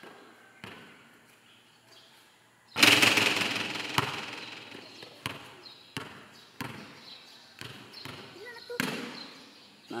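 A basketball strikes the hoop hard about three seconds in, a loud clang that rings on for about a second, and then bounces on a concrete court several times at uneven intervals.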